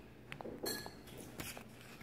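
Faint handling of a small paper notepad as its pages are turned, with a few light clicks and taps.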